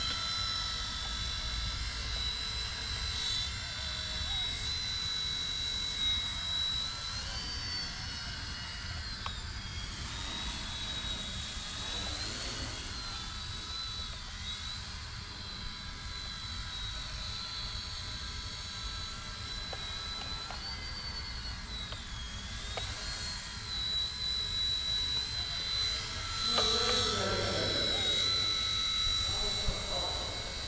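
Eachine E129 micro RC helicopter in flight, its motor and rotor giving a steady high whine that rises and dips in pitch a few times.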